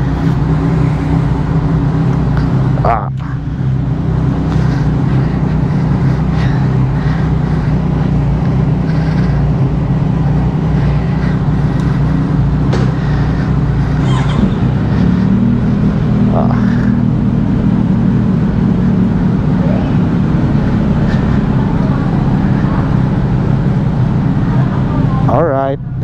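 Kawasaki Z900's inline-four engine idling steadily through an aftermarket underbelly exhaust. Its pitch steps up slightly about halfway through.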